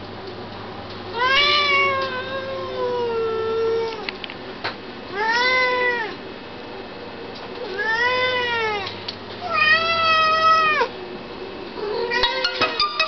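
Birman cat meowing four times, long drawn-out meows that each rise and then fall in pitch. The first lasts nearly three seconds, and the others about a second each.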